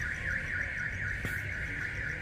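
Insect buzzing: a steady, high-pitched drone that wavers rapidly.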